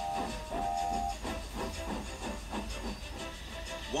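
Steam locomotive sound effect: a brief two-note whistle-like tone in the first second, then hissing steam and a steady rhythm of puffs, over soft background music.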